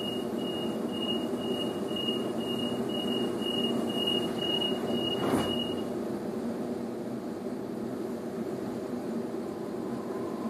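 Door-closing warning beeps on a Sydney CityRail suburban train, heard inside the carriage: a high beep about twice a second for some six seconds. A thud near the end of the beeps is the doors shutting. A steady rumble of the standing train runs underneath.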